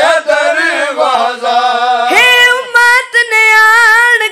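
Unaccompanied voices of a boy and men chanting a noha, a Shia lament, into a microphone. About two seconds in, a long held note begins.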